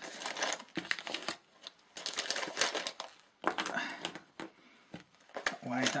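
Crinkling of a clear plastic bag and the clicks and clatter of small plastic and metal items (a protractor, a compass, keys) being handled and set down on paper on a desk.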